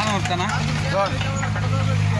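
Steady diesel engine drone from a working excavator, with people's voices over it.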